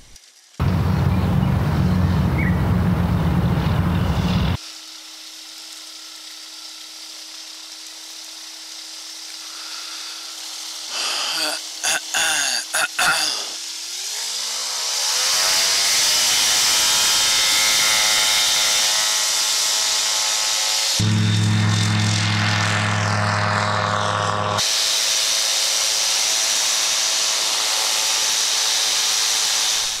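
Flexwing microlight trike's engine and propeller running, heard through several abrupt cuts with loud wind rumble on the microphone early on. About fourteen seconds in, the engine note rises in pitch and then holds steady and strong.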